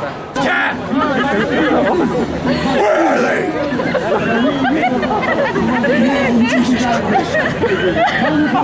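Several people talking at once, their voices overlapping in close chatter.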